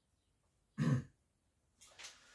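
A man clears his throat once, briefly, about a second in, with a faint breath near the end.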